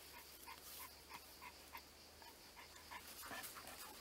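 Dog panting faintly and quickly, about four breaths a second, with a soft rustle near the end.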